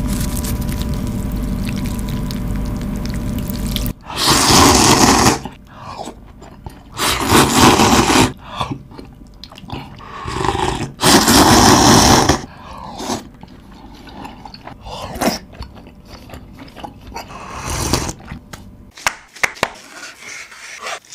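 Ramen noodles and broth slurped loudly in four bursts of one to two seconds, the longest while the broth is drunk straight from the bowl. A steady low hum fills the first few seconds.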